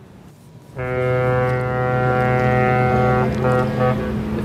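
Ship's horn sounding one long, steady blast that starts suddenly about a second in.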